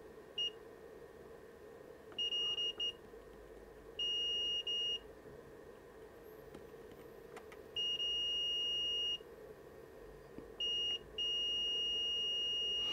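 Multimeter continuity tester beeping in a steady high tone as its probes touch points on a circuit board, a string of beeps, some brief and broken and some held for over a second. Each beep signals a connection between the probed pad and ground.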